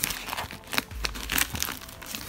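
Plastic parcel wrapping and damp newspaper crinkling and tearing as the package is pulled open by hand, in an irregular run of rustles with several sharp crackles.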